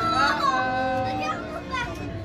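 A child's high-pitched voice calling out, one note drawn out for most of a second, over background music and people talking.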